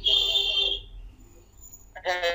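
A man's voice heard through a video call, breaking off about a second in and leaving a short pause.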